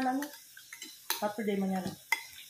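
A person's voice: one drawn-out, steady vocal sound held for most of a second past the middle. A few sharp clicks of cutlery on dishes come just before it.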